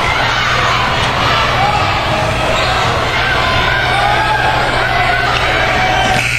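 Crowd in a school gym shouting and cheering during live basketball play, many voices overlapping, with a basketball bouncing on the wooden court.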